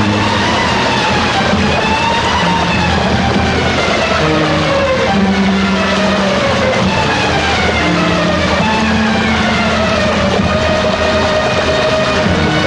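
Dramatic film background score, with melody lines sliding slowly up and down over held low notes, laid over a loud, steady rush of floodwater through rapids.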